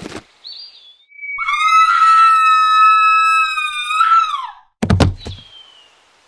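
A long, high-pitched scream of a falling figure, with a thin tone gliding downward beneath it, cut off by a heavy thud just under five seconds in: a fall from a cliff ending in impact.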